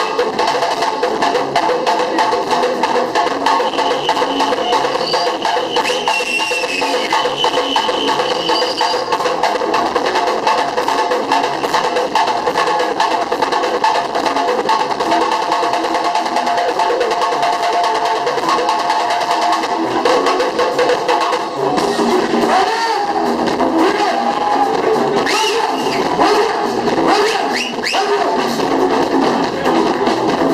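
Live band music with busy, fast percussion strokes over steady held notes.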